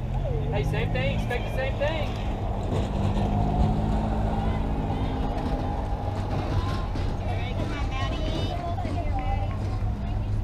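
Distant, unintelligible calls and chatter from players and spectators over a steady low rumble.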